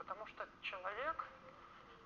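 Only speech: a faint voice talks for about the first second, then it goes quiet.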